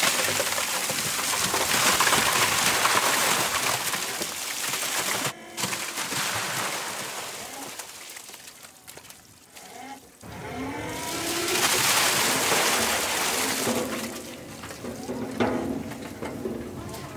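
Wet, freshly landed fish sliding out of a tipped stainless-steel tote and spilling into plastic tubs: a heavy rush of slithering and splashing, easing off midway, then a second loud surge near the end.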